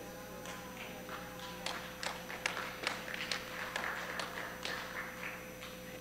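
Quiet room tone in a church hall: a steady faint hum with soft, scattered taps and clicks.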